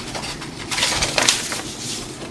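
Rustling of a paper pattern sheet being picked up and handled, in a run of scratchy crackles that is densest about a second in.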